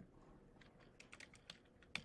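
A handful of faint computer keyboard key clicks in the second half, over near silence.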